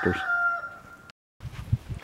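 A rooster crowing: the held end of a crow fades out and drops in pitch over the first second, then cuts off suddenly. Faint low rustling and knocks follow.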